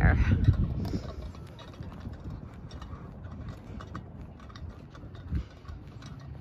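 Wind buffeting the phone's microphone, heaviest in the first second and then settling to a steady low rumble with a brief gust near the end, over faint footsteps crunching on a gravel path.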